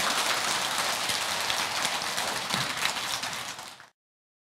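A large seated audience applauding. The applause fades and cuts off just before the end.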